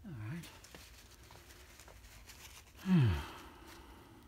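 A man's voice making two short, wordless vocal sounds that fall in pitch, one at the start and a louder one about three seconds in, with a few faint clicks between them.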